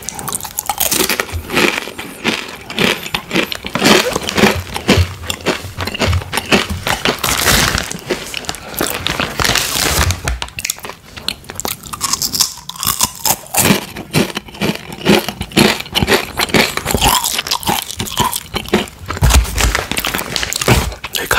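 Close-miked crunching and chewing of rolled tortilla chips (Takis), with many sharp crunches throughout. The plastic snack bag crinkles as a hand reaches in for another chip.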